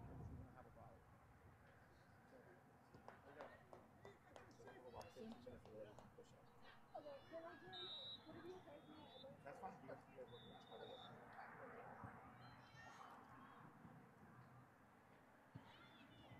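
Faint open-field ambience with distant shouting and voices from players and spectators across the soccer pitch. Two brief, thin, high steady tones come near the middle.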